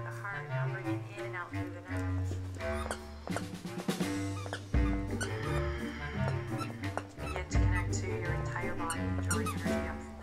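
Repeated squeaks of a squeaky dog toy being chewed by a dog, over instrumental background music with long held notes.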